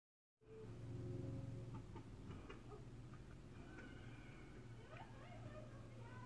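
Faint room tone with a steady low hum, through which a few faint, thin chirps come and go.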